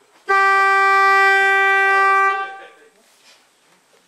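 Funicular cable car's warning horn sounded once at departure: a single loud, steady tone held about two seconds, then cut off.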